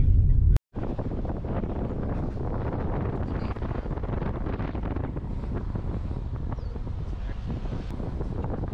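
Wind rushing over the microphone of a moving car, with steady road noise, after a split-second break in the sound just under a second in.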